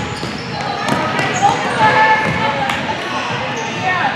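Indoor futsal game in a gym: indistinct voices of players and spectators calling out, loudest about two seconds in, with a couple of sharp ball impacts and short high squeaks from the court.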